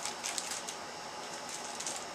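Faint rustling and crinkling of plastic-bagged toys being handled, a few light crinkles in the first second and then only quiet handling noise.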